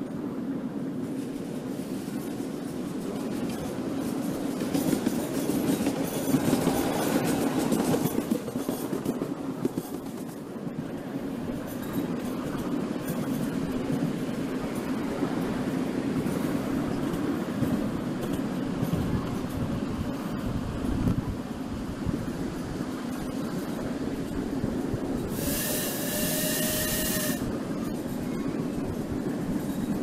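Miniature steam railway heard from aboard its passenger carriages: a steady rumble and clatter of small wheels on the track. Near the end the locomotive's steam whistle blows once for about two seconds.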